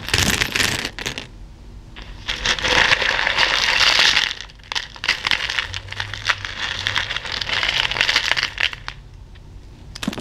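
A handful of plastic buttons, beads and sequins being stirred and let fall in a cloth-lined plastic bowl: a dense clicking rattle that comes in bursts, with quieter spells about a second in and near the end.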